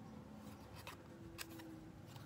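Faint handling of small paper cards: light rustling with a few short paper clicks about a second in.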